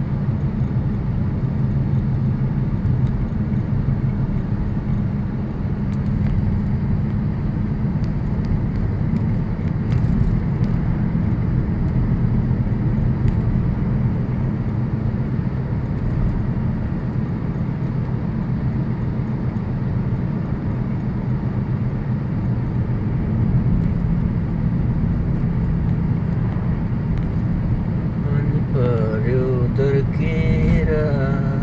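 Steady in-cabin road noise of a car driving at an even speed: a low, unbroken rumble of engine and tyres.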